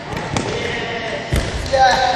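Two thuds on a sports-hall floor, a lighter one about a third of a second in and a heavier, deeper one past the middle, with people's voices.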